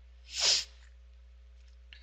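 A single short, sharp burst of breath noise from a person close to the microphone, about half a second in, followed by a faint click near the end.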